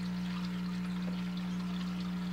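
Aquarium airstone bubbling steadily, over a constant low hum.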